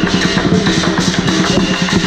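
Chinese drum, gongs and cymbals playing a dense, driving beat as accompaniment to a qilin and lion dance.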